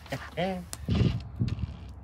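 A short hummed voice sound, then a few knocks and clicks of a cordless drill and hands working against a wooden cabinet.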